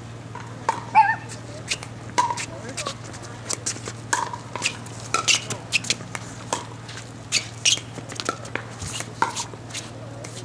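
Pickleball rally: paddles hitting a hard plastic pickleball, a run of sharp pops and clicks at an uneven pace, with a steady low hum beneath.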